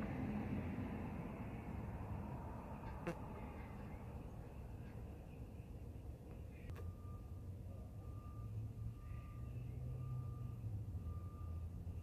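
Low, steady engine-like rumble in the background, swelling in the second half. From about seven seconds in, a thin electronic beep repeats roughly once a second.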